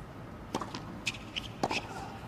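Tennis ball struck by racket: a sharp pop as the serve is hit about half a second in, and a second pop from the return about a second later.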